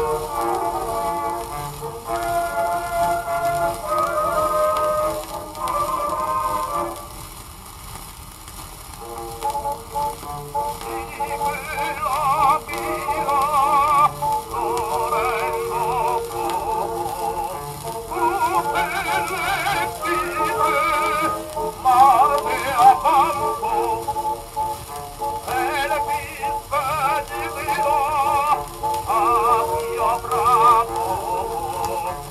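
Early acoustic Pathé disc recording of an operatic tenor with orchestra. The orchestra plays alone, drops quiet about seven seconds in, and then the tenor enters around ten seconds in, singing with wide vibrato over the accompaniment. The sound is thin and narrow-range, with a faint hiss of disc surface noise.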